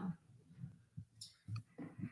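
A few faint, scattered clicks in a lull between speech.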